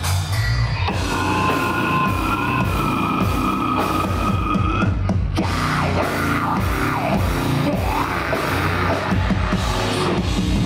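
Heavy metal band playing live at full volume: distorted guitars, bass and a pounding drum kit. A high sustained note rings for about four seconds near the start, then gives way to sliding, bending sounds over the riff.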